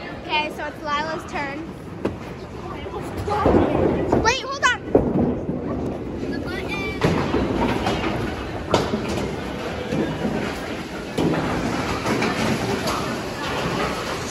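Children's voices and high squeals, with no clear words, over bowling-alley noise, with several thuds along the way.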